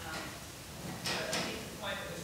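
Faint, distant speech from an audience member asking a question away from the microphone, the words unclear.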